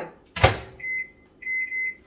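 Microwave oven being shut and set: a sharp thump about half a second in, then a few high electronic keypad beeps as it is set to run for one minute.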